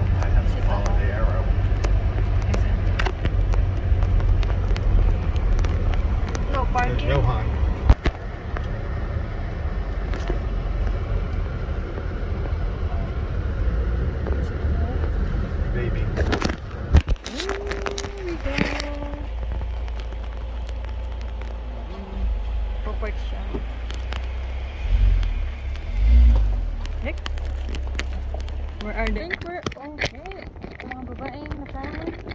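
Car cabin noise while driving: a steady low rumble of road and engine that eases off partway through as the car slows. Near the end come two heavy low thumps.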